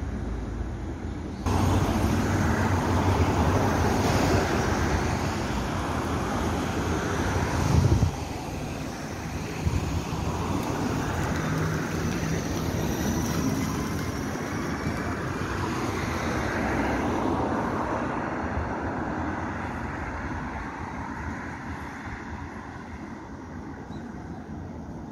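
A Hyundai electric low-floor city bus pulling away from a stop and passing close by. Its tyre and road noise comes up sharply about a second and a half in, with a low thump near eight seconds, then a faint rising whine from the electric drive as it accelerates. The sound fades as it drives off.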